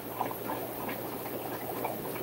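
Steady aquarium fish-room background of bubbling water, with a few faint light taps.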